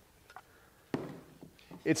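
Two wooden-handled hammers being picked up and handled, with a faint tick and then one sharp knock about a second in that dies away quickly.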